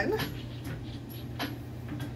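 Inflated rubber exercise ball squeaking and rubbing in short bursts, about twice a second, as a person seated on it twists side to side, over a steady low hum.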